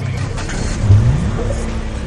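Closing sound of a TV news title sequence: a loud, low rising whoosh sweeps up in pitch about a second in over the tail of the theme music, then fades away.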